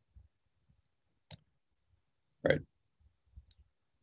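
Two short clicks about a second apart, the second louder, over faint low thuds; otherwise a quiet room.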